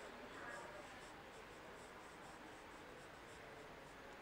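Faint strokes of a marker writing a word on a whiteboard, barely above room tone.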